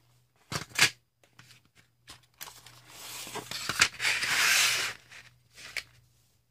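Trays of colored pencils being lifted out of their tin and set down: a few light clicks and knocks, then a scraping, rustling slide from about three to five seconds in.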